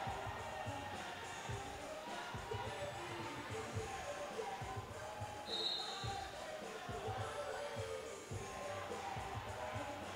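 Roller derby pack play on a flat track: quad skate wheels rolling and bodies knocking, heard as irregular dull thuds over a murmur of crowd. A short, high referee whistle blast sounds about five and a half seconds in.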